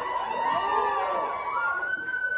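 A siren-like electronic tone, held steady and then stepping up in pitch about one and a half seconds in, with sweeping swirls beneath it.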